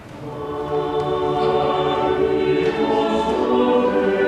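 Church choir singing, coming in at the start and swelling to full voice within the first second, then holding long sustained chords.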